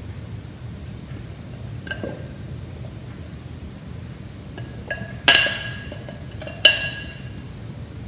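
A heavy glass bowl clinks twice against a glass baking dish, a little over five seconds in and again about a second and a half later, each strike ringing briefly, over a low steady background.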